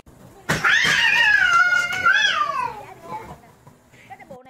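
A domestic cat giving one long, loud, drawn-out meow that starts about half a second in, wavers, and falls in pitch as it dies away.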